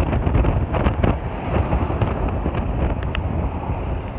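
Steady road and engine noise of a moving car, heard from inside, with wind buffeting the microphone.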